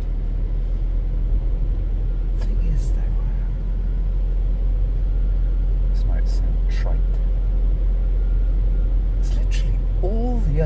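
Inside a moving van's cab: a steady low rumble of engine and road noise, with a few brief clicks.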